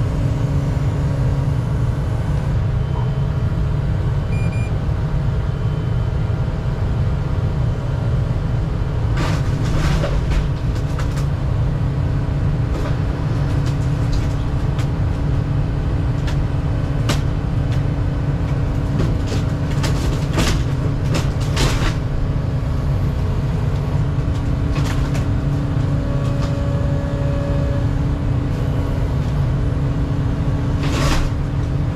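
Excavator's diesel engine running steadily under load, with a hydraulic whine that shifts slightly about four-fifths of the way through. Over it come several sharp cracks and creaks as the bucket and thumb pry at the cabin's metal roof: a cluster about a third of the way in, more around two-thirds, and one at the very end.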